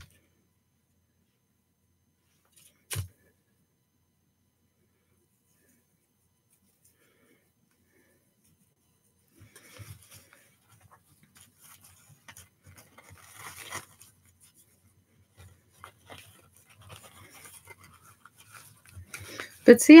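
Near silence broken by a single click about three seconds in, then faint, irregular rustling and light scraping of paper and card being handled on a tabletop.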